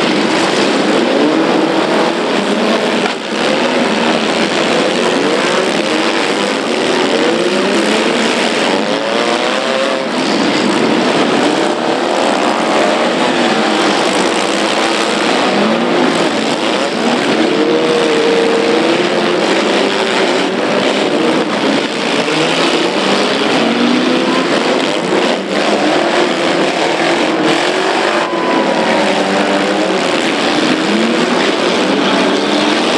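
Many demolition derby cars running and revving at once in the arena, their engine notes rising and falling over one another without a break.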